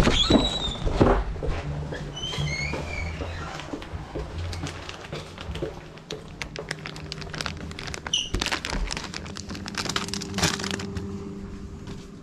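Hands handling things at close range: a run of clicks, knocks and the crinkle of a packet, with a few short squeaky chirps in the first seconds and a steady low hum from about halfway.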